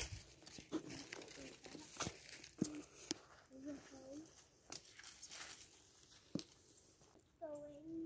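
Footsteps crunching and crackling through dry fallen leaves and twigs, with scattered sharp snaps. A soft voice murmurs in the middle, and someone starts speaking near the end.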